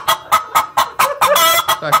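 Rapid chicken-like clucking, about four short clucks a second, with one longer, louder squawk about a second and a half in.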